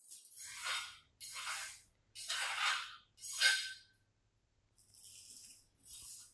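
Loose moulding sand rustling and spilling in four short hissing bursts about a second apart, with a fainter one near the end, as the wooden drag box of a sand mould is turned over on the worktable. A faint steady low hum lies underneath.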